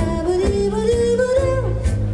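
Live swing jazz band playing, a lead melody gliding up and bending over above a steady walking bass line.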